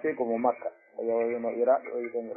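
Only speech: a man lecturing in Fula (Pular), with a short pause just before a second in. The sound is narrow and radio-like.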